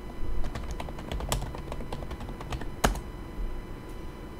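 Typing on a computer keyboard: an irregular run of key clicks, with one louder click a little under three seconds in.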